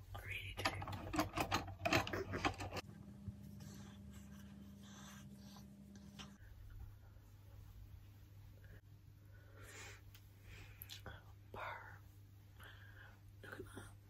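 Close scratchy rustling of hands working through hair near the microphone for the first few seconds, then quiet room sound with a steady low hum and a few faint whispered sounds.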